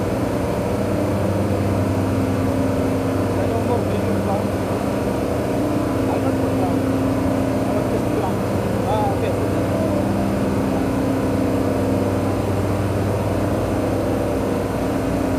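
Air-conditioning machinery running with a steady, unchanging hum and low drone.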